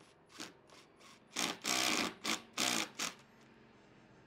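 Makita cordless impact driver driving a screw into a pine slat in a series of trigger bursts: two short taps first, then several longer bursts between about one and a half and three seconds in, after which it stops.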